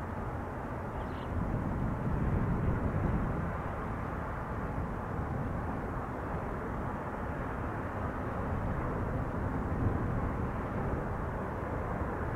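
Steady low outdoor background rumble, swelling slightly for a moment a couple of seconds in.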